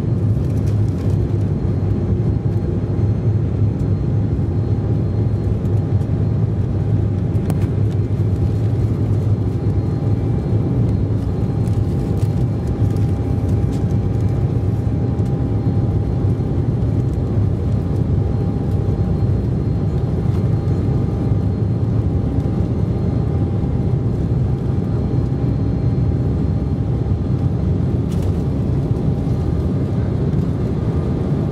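Steady low rumble of an Embraer 190's turbofan engines heard inside the cabin, with a thin steady whine over it, as the jet rolls along the runway.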